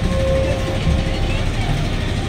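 Steady low rumble of a river cruise boat's engine under an even wash of wind and water noise, with a murmur of voices in the background.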